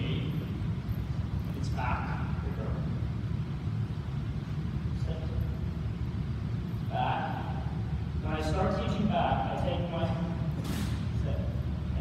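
Short bursts of speech, a few words at a time, over a steady low rumble of a large hall.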